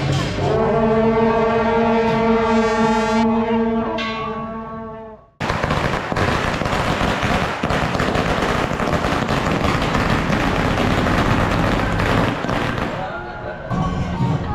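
A sustained chord of steady horn-like tones that fades out about five seconds in. After a brief silence, a loud, dense crackling din from the temple procession fills the rest, with wavering high tones coming in near the end.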